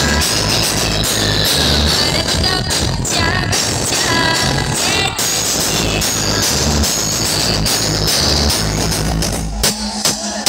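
Loud dance music blasted from a truck-mounted DJ sound system's stacked speaker towers, with heavy pulsing bass. The deep bass drops out near the end.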